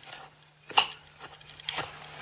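Small knife cutting against a wooden board: three short sharp clicks, the loudest about three-quarters of a second in.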